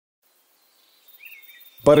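Near silence for about a second, then a faint outdoor nature ambience fades in, with a single short bird chirp. A narrator's voice starts near the end.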